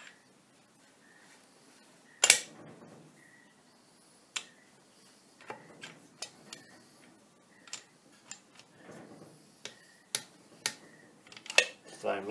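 Steel gears, shafts and collars of a lathe apron gearbox being fitted together by hand: scattered sharp metal clicks and clinks, the loudest a single clack about two seconds in, the rest lighter and irregular through the second half.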